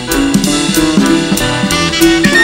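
Jazz quartet playing live: a saxophone solo over a drum kit, with cymbals struck in a steady rhythm.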